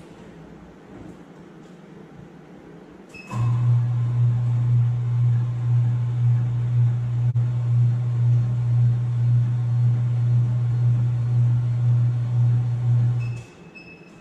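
Laboratory Stomacher homogeniser starting with a short beep and running with a loud steady hum that pulses about twice a second as its paddles work the sample bag, homogenising the food sample in its diluent. After about ten seconds it stops, and a few short beeps follow.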